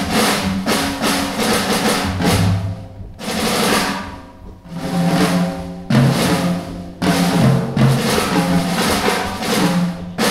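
Jazz drum kit played busily, with dense snare and tom strokes and cymbals over ringing low tones, in phrases that break off briefly about three and about seven seconds in and then start again abruptly.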